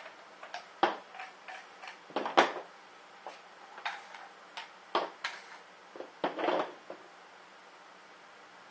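PVC compression-coupling parts being unscrewed and set down on a hard tabletop: irregular plastic clicks and knocks, the loudest about two and a half seconds in, with a few short scraping rustles.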